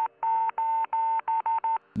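Morse code SOS sent as a single high beeping tone: three long beeps, then three short ones, the last of the opening three short beeps ending just as it begins.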